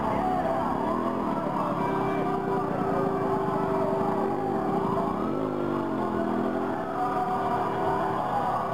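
Several car horns sounding long held notes together over a crowd's shouting voices in a slow-moving street convoy.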